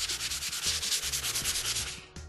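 Hand sanding with sandpaper: a block rubbed in quick, even back-and-forth strokes, each stroke a rasping hiss.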